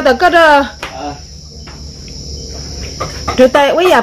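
Crickets chirring steadily in one continuous high-pitched drone, with a man's voice talking over it in the first second and again near the end.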